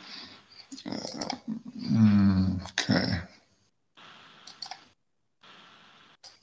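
A low human voice making a wordless, drawn-out vocal sound of about two and a half seconds over a video-call link, its pitch bending as it goes, with a few faint clicks.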